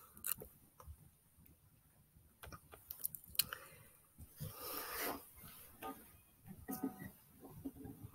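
Faint handling noise from an acoustic guitar being settled into playing position: scattered soft clicks and knocks, with a longer rustle about halfway through.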